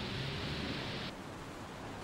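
Steady hiss of an old film soundtrack's noise floor, heard in a gap between narration lines. Its higher part drops away a little past halfway, leaving a duller hiss.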